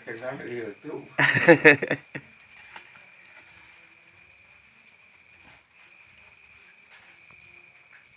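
A voice is heard briefly in the first two seconds. After that there is only a steady, faint, high-pitched chirring of night insects, with a few soft clicks from handling.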